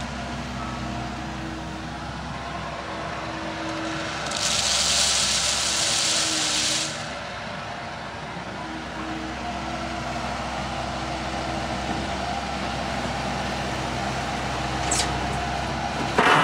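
Komatsu PC78 excavator's diesel engine running steadily under work, with a loud hiss lasting about two and a half seconds starting about four seconds in.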